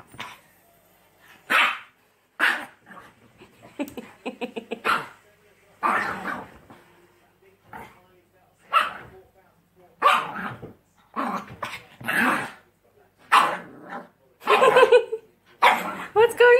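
A small dog barking repeatedly from under sofa cushions, roughly once a second, with a quick run of short yaps about four seconds in.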